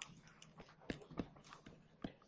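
Faint taps of a stylus on a tablet screen while handwriting, two slightly louder ones about a second in; otherwise near silence.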